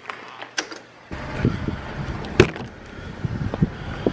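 A door knob and latch clicking as a front door is opened, followed from about a second in by a low rumbling noise with scattered clicks, the loudest a sharp click about two and a half seconds in.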